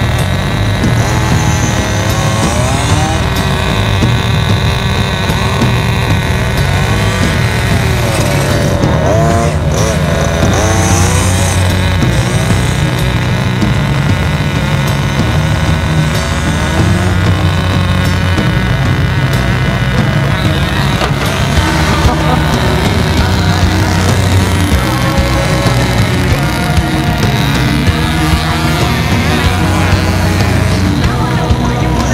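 Small glow-fuel (nitro) engine of a radio-controlled touring car revving up and down as the car drives and slides on asphalt, mixed with background music.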